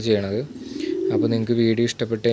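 Domestic pigeons cooing in a loft, several low, rolling coos following one another with hardly a pause, each dipping and then rising in pitch.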